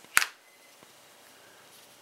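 A single sharp plastic click just after the start as the battery is pressed into the Samsung Galaxy S II's battery compartment, the sound of it seating.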